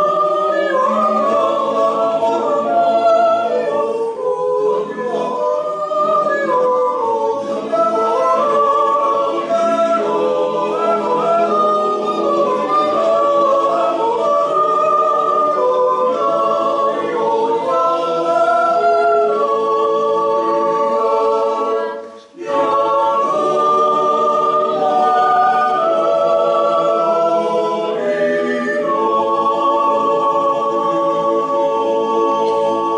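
Swiss yodel club choir singing a cappella in multi-part harmony, holding long chords, with a brief break about 22 seconds in.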